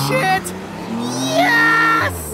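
Car engine revving as the car accelerates away, its pitch rising steadily, with a voice crying out over it.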